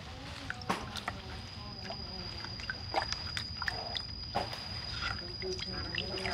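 Taro corms being scrubbed by hand in a plastic bucket of muddy water: water sloshing and splashing, with a few sharp knocks as the corms hit the bucket.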